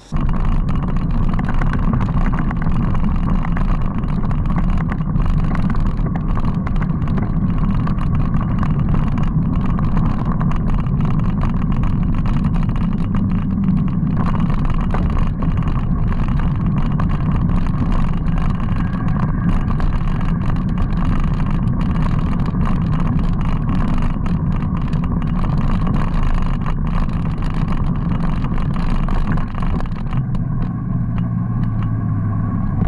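Steady rush of wind over a bike-mounted camera's microphone, mixed with the rolling noise of bicycle tyres on gravel and tarmac while riding.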